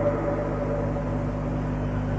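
Steady low electrical hum with a haze of background noise, carried by the old recording and its microphone system during a pause in speech.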